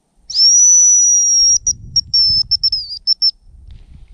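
A hazel grouse decoy whistle (manok) blown close to the microphone, imitating a male hazel grouse's call to draw the birds in: one long, high, thin whistle, then a string of short broken notes. Wind rumbles on the microphone underneath.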